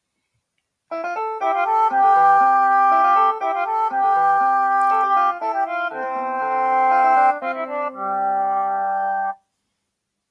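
Notation-software playback of a short three-part theme for piano, flute and guitar, in synthesized instrument sounds. Short runs of quick notes lead into held notes. It starts about a second in and ends on a held chord that cuts off suddenly.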